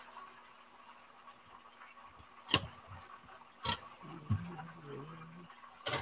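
Chicken frying in a cast iron pan of hot oil, a faint steady sizzle, broken by sharp clicks of metal tongs: twice in the middle and once near the end.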